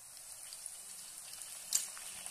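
Banana slices frying in hot oil in a wok: a steady sizzle with scattered crackles as spoonfuls of turmeric-and-salt water go into the oil. One sharp pop near the end.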